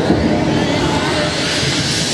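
Trance track played loud over a party sound system: a hissing noise sweep that grows brighter towards the end, between vocal and synth sections.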